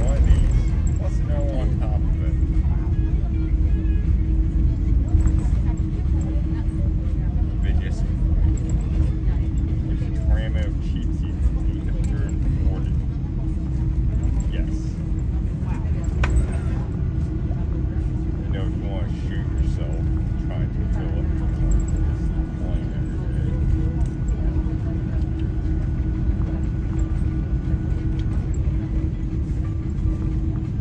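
Cabin noise of an Airbus A330 rolling on the ground after landing: a steady, loud low rumble with a constant engine hum, and faint cabin voices.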